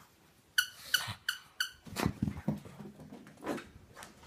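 Four quick, sharp, high-pitched squeaks about half a second to a second and a half in, followed by a pug's short, low-pitched noises while it plays.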